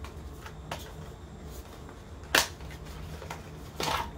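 Paperboard product box handled and opened by hand: light ticks and taps, with a sharp click about two and a half seconds in and another near the end.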